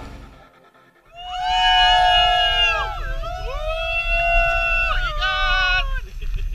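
Background music fading out, then about a second in a group of people shouting a long, high, drawn-out cheer together. The cheer breaks off about halfway, starts again, and ends in quick pulsing shouts near the end.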